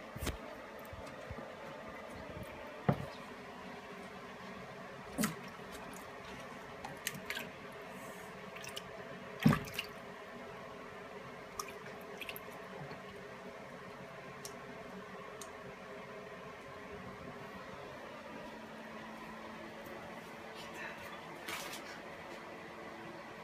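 Young alligator splashing in shallow water as it seizes a mouse and rolls with it: scattered sharp splashes and knocks, the loudest about halfway through, over a faint steady hum.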